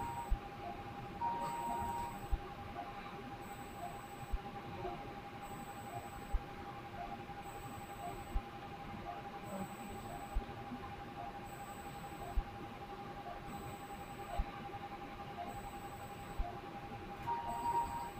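Faint electronic sounds of operating-theatre equipment: a steady thin tone with soft high pips about once a second and faint ticks about every two seconds.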